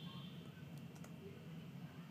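A few faint computer mouse clicks, made while confirming a Windows User Account Control prompt to launch Odin, over a low steady hum.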